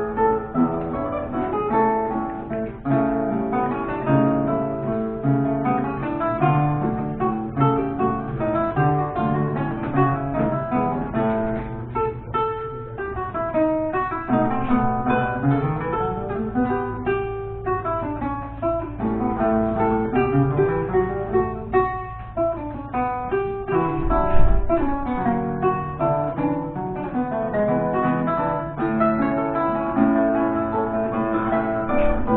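Duet of two romantic guitars, reproductions of c. 1815 Vinaccia and Fabbricatore models, playing classical music with plucked notes throughout and rising and falling runs in the middle.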